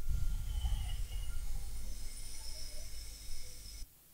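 Hot air rework station blowing onto a freshly fluxed chip to reflow its solder: a steady airflow hiss with a low rumble, which cuts off sharply near the end.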